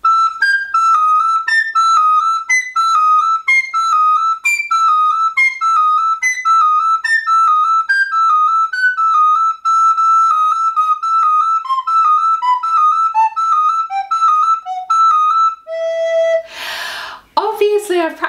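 Recorder playing a practice pattern: one high note repeated over and over, alternating with neighbour notes that climb step by step higher and then step down lower. It ends on a held low note about 16 seconds in. A short burst of noise follows, and a woman starts speaking just before the end.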